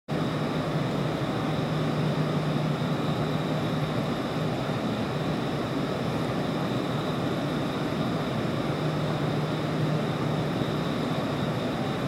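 Steady background hum and noise on a railway station platform, with a low steady drone that fades for a few seconds mid-way and then comes back.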